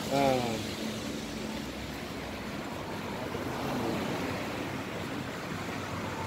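Street traffic noise with a car driving past: a steady rushing hiss that swells a little around the middle.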